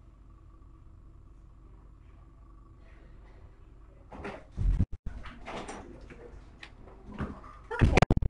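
Low steady room hum, then from about four seconds in a run of loud knocks and bumps with rustling between them, broken by brief dropouts where the sound cuts out completely.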